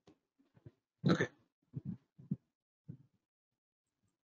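A man says a quiet 'okay', followed by three brief, soft, voice-like sounds about half a second apart.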